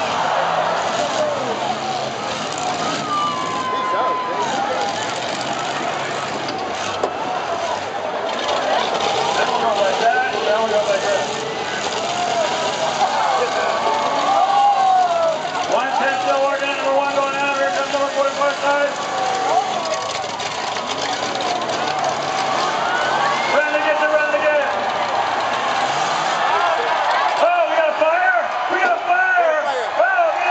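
Dense crowd noise of spectators talking and calling out, mixed with the engines of motorhomes running in a demolition derby arena, all at a steady loud level. Several louder held calls stand out over the babble in the second half.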